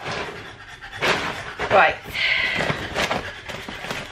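A shopping bag rustling and packets being handled as items are pulled out, with short clicks and knocks, panting, and a brief murmured voice sound near the middle.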